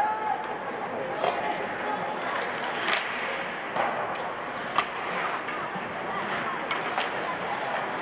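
Ice hockey rink during play: a steady crowd murmur with several sharp knocks of sticks and puck against the boards and ice, scattered through.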